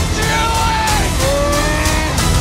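Dramatic orchestral trailer music: held notes that slide slowly in pitch over regular percussion hits, with a rushing vehicle-like action sound effect mixed under it.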